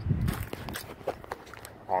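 A few light footsteps and small knocks from a handheld phone being carried while walking, with a low thump at the start.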